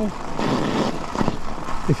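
Riding noise of an e-bike on an icy, snow-covered road: a steady rush of tyre and wind noise, with a few crackles about a second in.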